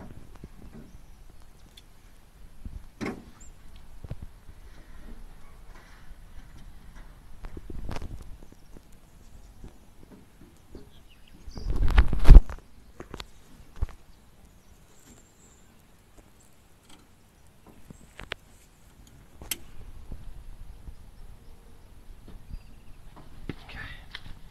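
Scattered clanks and knocks of hands and tools working on an old truck, with one loud thump about halfway through. No engine cranking or running.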